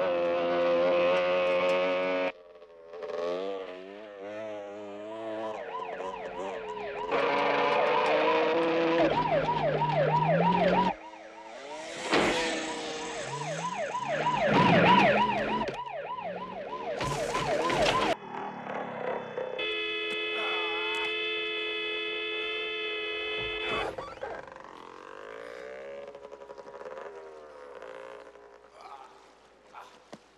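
Chase soundtrack of engines from a Yamaha XT250 motorcycle and a police car, revving up and down, under a police siren wailing up and down. There are a few sudden loud hits along the way, and a steady held tone for about four seconds about two-thirds of the way through.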